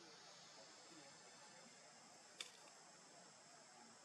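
Near silence: a faint, steady high-pitched background hiss, with a single sharp click about two and a half seconds in.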